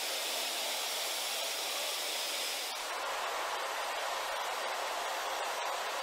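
Steady hiss of compressed air flowing through a hose into a rubber ship-launching airbag.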